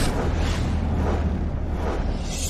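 Cinematic intro sound effect: a rushing whoosh that fades into a deep, steady rumble.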